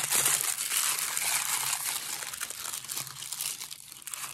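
Patterned paper wrapping being unfolded and handled, crinkling and rustling in quick little crackles that die down near the end.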